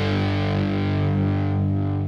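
Distorted electric guitar and bass guitar holding one sustained chord that rings on and slowly fades, its treble dying away.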